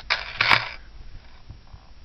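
A short metallic jingle and rustle of a silver-tone chain necklace being handled, with one sharp click about half a second in.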